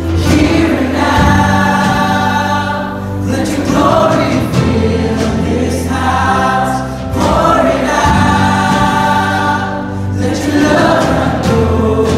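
A contemporary worship song sung by many voices over a band, with long held notes on a steady bass line and phrases that break every few seconds.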